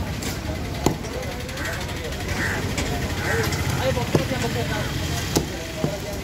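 A heavy cleaver chopping through fish chunks into a wooden block: about four sharp chops, irregularly spaced, the last two close together near the end. A steady low engine hum runs underneath.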